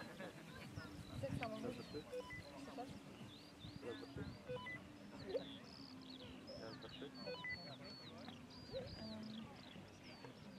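Faint open-air background of distant voices, with a steady series of short high chirps running through it.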